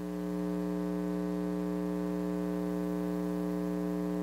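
Steady electrical mains hum with a buzzy edge and an unchanging pitch.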